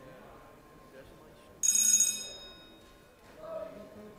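A single bright bell-like ring that starts suddenly about a second and a half in and fades over about a second, with a fainter, lower tone shortly after, over the murmur of a large room full of talking people.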